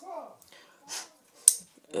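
Quiet handling with one sharp click about one and a half seconds in, as of a small hard object being moved or set down; a trailing bit of voice at the start.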